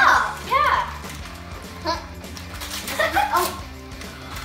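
Young girls' short excited exclamations over background music, with a faint rustle of gift wrapping near the end as a ribbon is pulled off a small present.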